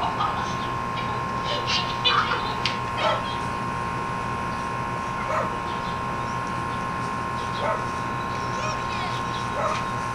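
A dog barking: short separate barks, several close together in the first few seconds, then single barks a couple of seconds apart. A steady high hum runs underneath.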